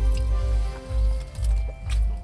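Loud music from a car stereo in a vehicle parked just behind, heard from inside a parked van: a heavy bass beat pulsing about twice a second under sustained musical tones.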